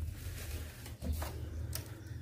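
Quiet room tone: a steady low hum with a couple of faint clicks, one just after a second in and one near the end.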